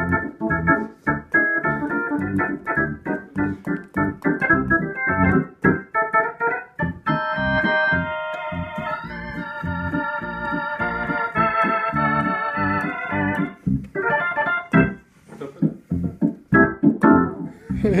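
Hammond C3 organ played through a Leslie 122 rotating speaker. Short detached chords in a steady rhythm, then several seconds of held chords whose tone wavers, then short chords again.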